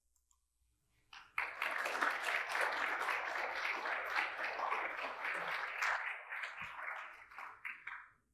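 Audience applauding. It starts about a second in, holds steady and thins out near the end.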